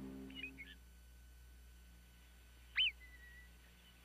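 A marmot's alarm whistle: one short, loud, high whistle that rises and falls sharply about three seconds in, with a few faint chirps near the start.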